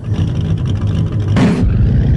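A car engine running loud with a deep rumble, with a short, sharper burst of noise about one and a half seconds in.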